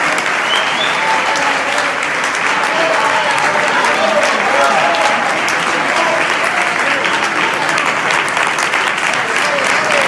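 Audience applauding: steady clapping of many hands, with voices calling out over it.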